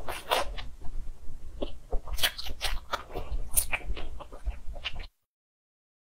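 Close-miked eating sounds: a string of sharp crunching and chewing crackles, cutting off suddenly about five seconds in.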